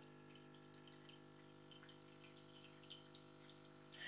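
Espresso machine's pump running with a faint, steady hum while espresso trickles into a mug.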